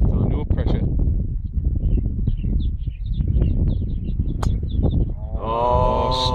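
Wind rumbling on the microphone, then a single sharp click of a driver striking a golf ball off the tee about four and a half seconds in, followed near the end by a man's drawn-out "ooh" as the shot flies.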